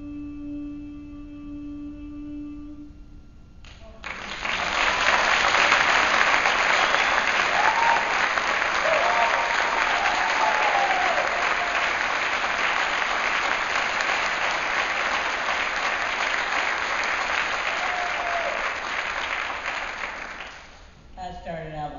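A final grand piano chord rings and fades, then about four seconds in the audience starts applauding, loud and sustained, with a few cheers in the middle.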